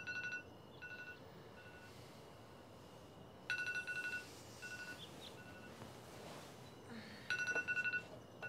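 An electronic ringer trilling in rapid pulses. Short bursts repeat about every four seconds, three times, and each burst is followed by fainter echoing repeats.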